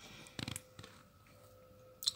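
Quiet indoor room tone with a faint steady hum and a few soft clicks about half a second in.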